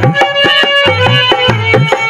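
Instrumental interlude of a devotional bhajan: wooden kartal clappers clacking in an even rhythm over a hand drum whose low strokes bend upward in pitch, with a melody instrument holding sustained notes above.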